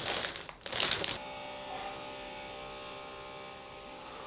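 A plastic shopping bag rustles and crinkles for about the first second. Then a faint, steady whine of a power drill sets in and holds, sounding like drilling into concrete.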